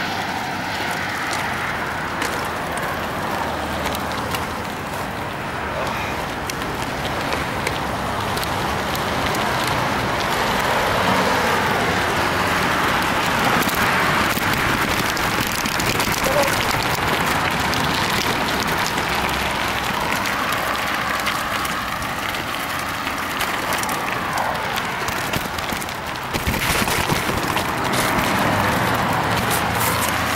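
Steady rushing and crunching noise of a mountain bike moving over a gravel and stone track, with wind buffeting the microphone.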